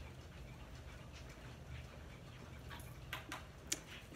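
Quiet room tone with a faint low hum, broken by a few short faint clicks in the last second or so.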